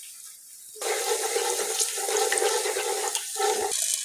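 Hot oil in a nonstick pot sizzling as whole spices are tipped in, a tempering of cumin seeds, cardamom, cloves, cinnamon and black peppercorns. The sizzle starts about a second in, dips briefly, then flares louder at the end.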